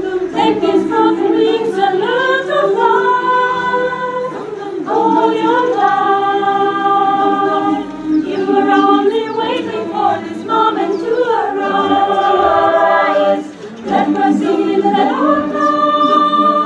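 Mixed choir of women's and men's voices singing a cappella in sustained chords, with short pauses between phrases.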